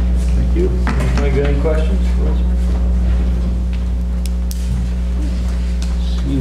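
Steady low electrical hum on the meeting's sound system, under quiet, indistinct talk in the room and a few light clicks.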